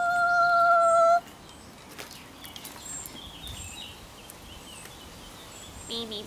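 A voice humming a high note with a slight vibrato, the held end of a short tune, stops about a second in. Then a quiet outdoor background follows, with a few faint bird chirps.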